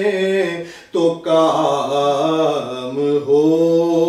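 A man's solo unaccompanied naat recitation, sung in long held notes with a wavering ornament. There is a brief pause for breath about a second in.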